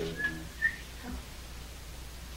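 Two very short, high-pitched squeaks, the second one louder.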